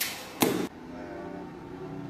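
Two sharp slapping hits in quick succession, a hand strike landing on a sparring partner, the second the louder. They cut off about two-thirds of a second in and quiet background music with held notes follows.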